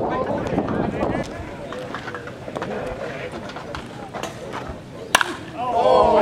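Spectators' voices and chatter, then a single sharp crack of a bat hitting a baseball about five seconds in, followed at once by louder shouting from the crowd.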